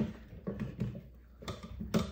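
Cooked cauliflower florets tipped from a wooden bowl into the plastic bowl of a food processor, landing with a few soft bumps and a sharper knock near the end.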